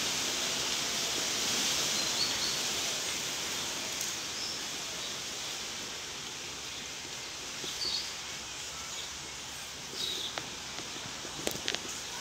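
Steady outdoor background hiss that eases a little midway, with a few faint short chirps and some light clicks near the end.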